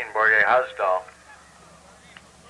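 A person's loud, drawn-out shout lasting about a second, then faint voices in the background.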